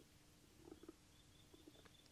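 Near silence: faint room tone, with a few very faint, soft, short sounds in the middle.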